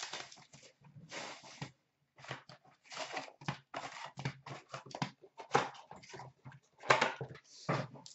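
Hockey card pack wrappers crinkling and tearing, with packs and cards handled, in an irregular run of short rustles and crackles. The loudest comes near the end.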